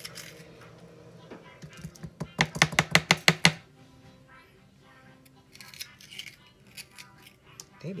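Kitchen knife chopping a sweet pepper on a plastic cutting board: a quick run of about eight strokes between two and three and a half seconds in, then a few lighter knife taps later on.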